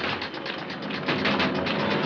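Rapid mechanical clicking from a bank vault's combination dial being turned. Music comes in about a second in.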